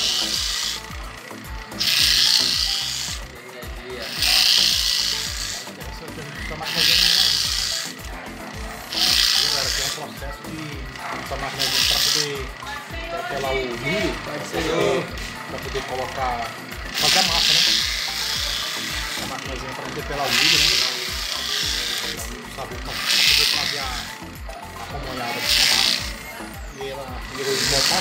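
Electric corn grater rasping as ears of corn are pressed against its spinning grater, one loud scraping stroke about every two seconds, with a break about halfway through.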